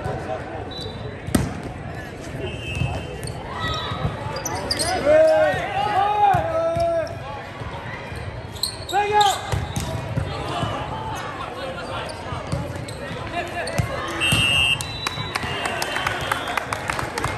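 Volleyball rally in a large gymnasium: sharp ball hits, players shouting loud calls in the middle of the rally, over the steady hubbub of the hall.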